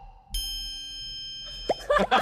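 Post-production cartoon 'idea' ding: a bright ringing chime starts about a third of a second in and holds for about a second. A short knock with a falling tone follows near the end.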